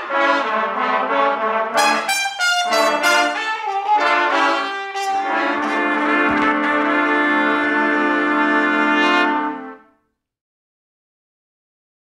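Several trumpets playing together: a run of short separate notes, then a long held chord of several pitches lasting about four seconds. The chord cuts off about ten seconds in.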